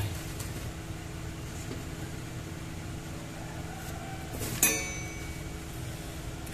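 Steady mechanical hum of a running egg incubator's fan motor, with a low drone and a held mid tone. A single sharp click with a brief ring comes a little past halfway.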